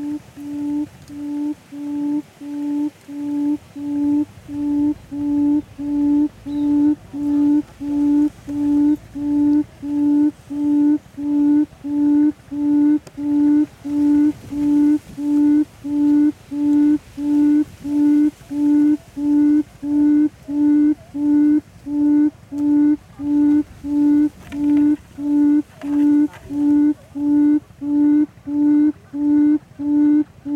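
A long series of low, evenly spaced hooting notes, a bit more than one a second, growing louder over the first several seconds and then steady: the booming call of a buttonquail, as used to lure the bird to a mirror trap.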